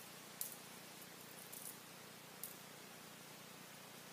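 Quiet room hiss with a few short, faint clicks as a plastic fidget spinner is handled and flicked into a spin.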